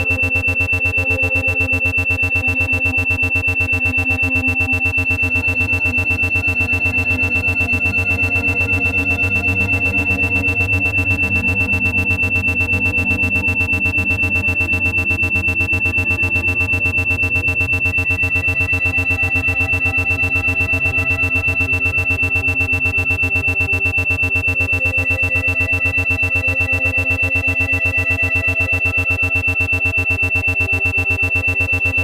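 Ambient synthesizer music with a steady high tone over it, the whole sound pulsing rapidly and evenly: an 8 Hz isochronic and monaural beat track for low-alpha brainwave entrainment.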